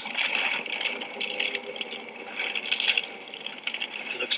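Rain hitting a moving car's windshield and roof, heard from inside the cabin: a steady hiss with many small ticks of drops.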